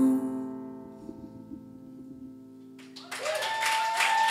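The final sustained chord of a stage keyboard fades out over about a second and lingers faintly. About three seconds in, the audience breaks into applause, with one long high cheer above it.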